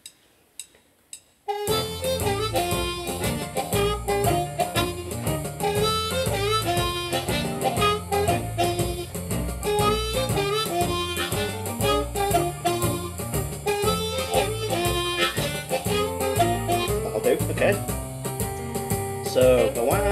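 A few soft clicks, then a blues backing track with a marching-shuffle groove starts abruptly about a second and a half in. A diatonic blues harmonica improvises a lick over it, bending its notes.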